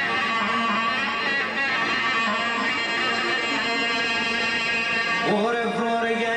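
Live Greek folk band music: clarinet melody over plucked string accompaniment and keyboard. Near the end a man's voice comes in, sliding up into a sung note.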